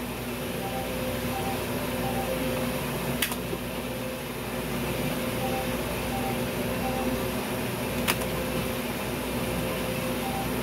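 Electronic game sounds from a gas-station slot-style machine as its reels spin: short beeps in small groups of two or three over a steady hum, with two sharp clicks about three and eight seconds in.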